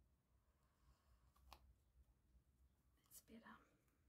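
Near silence: room tone, with a faint click about one and a half seconds in and a faint breathy sound a little after three seconds.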